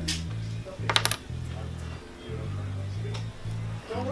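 Background music with a steady, repeating low bass pattern. About a second in there is a brief clatter of sharp clicks, the loudest sound here, with a single click at the start and a faint one near the end.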